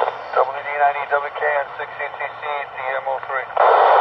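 A station's voice received over a 2m/70cm transceiver's speaker from a satellite downlink, thin and narrow in pitch range like a radio voice, with loud hiss at the start and again near the end.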